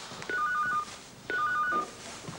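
Electronic telephone ringing twice, each short ring a quick trill of two alternating high tones.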